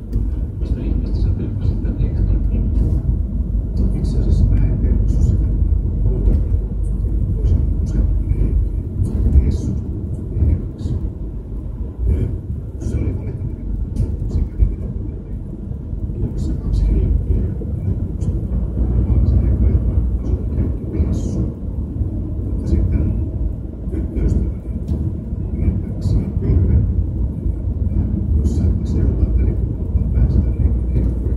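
Road noise inside a moving Mercedes-Benz car on a highway: a steady low rumble of tyres and engine, with frequent small clicks and rattles from the cabin.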